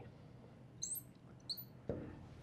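Felt-tip marker squeaking on a glass writing board in two short, high chirps as a few characters are written, followed by a soft low thump just before the end.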